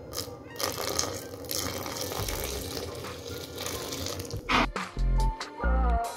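Hot milk pouring in a steady stream into cake batter in a stainless steel bowl, over background music. Near the end come two short low thumps.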